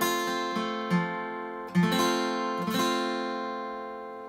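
Epiphone Masterbilt acoustic guitar strummed on an F major chord, three strums a second or less apart, the chord ringing on and fading toward the end.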